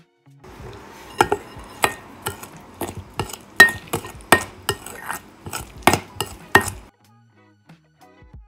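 A spoon stirring grainy cottage cheese with egg and sugar in a glass bowl: a wet mixing sound broken by many irregular clinks of the spoon against the glass. It stops about seven seconds in.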